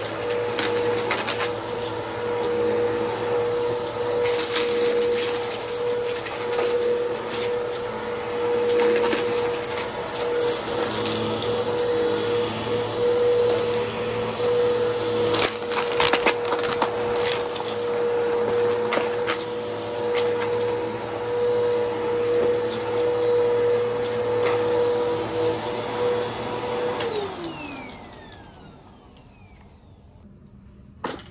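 Upright bagless vacuum cleaner running on carpet: a steady motor whine with crackles and rattles of small debris being sucked up. About 27 seconds in, the motor is switched off and winds down, its pitch falling.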